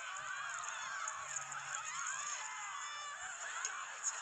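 Several voices shrieking and whooping at once, overlapping high cries that slide up and down in pitch.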